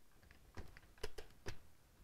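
A few light clicks from a handheld digital multimeter's rotary selector dial being turned over to the amps setting.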